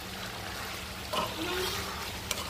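Diced pumpkin and onions frying in oil in a pot, giving a steady sizzle while a spoon stirs them. A brief voice sound comes a little past the middle.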